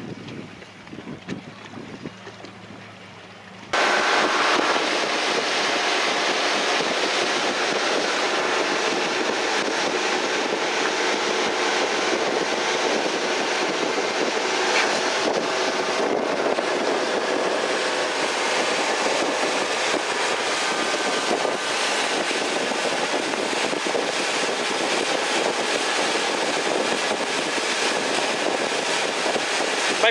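Motorboat running at speed across open water: engine and rushing wind on the microphone, a steady loud noise that starts suddenly a few seconds in. Before that, a quiet low hum while the boat sits nearly still.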